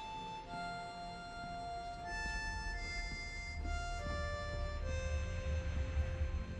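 A harmonica plays a slow spiritual melody in long held single notes, stepping lower toward the end, over a low rumble that comes in about two seconds in.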